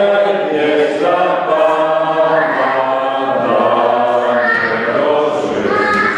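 A choir singing long held notes, the chords changing about once a second.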